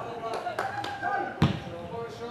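A football being kicked: a few light knocks, then one loud, sharp thud about one and a half seconds in, over indistinct shouting voices on the pitch.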